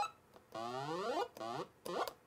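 Chiptune-style rising pitch sweeps from original Game Boy audio hardware, repeating. The sweep rate is set by tilting an accelerometer: one longer sweep about half a second in, then two shorter ones near the end.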